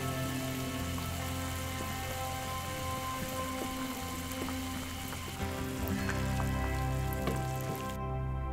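Water at a rolling boil, bubbling steadily in a pot as it is stirred for poaching eggs, under soft background music.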